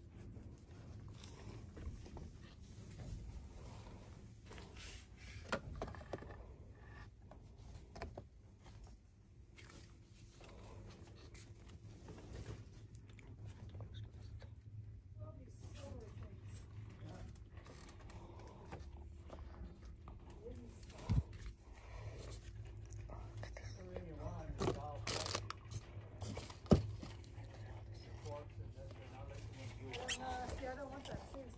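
Shop-floor background: a steady low hum with packaged goods being handled and rustled, and a few short knocks, the loudest near the end.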